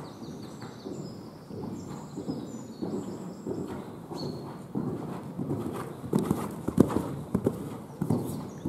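Hoofbeats of a horse cantering on the sand footing of an indoor arena: dull thuds in a steady rolling rhythm, growing louder about six seconds in as the horse comes close.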